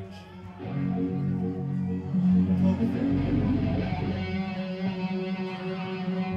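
Electric guitar ringing out sustained notes and chords about half a second in, sounded live between songs while its tone is being adjusted toward more upper mid-range.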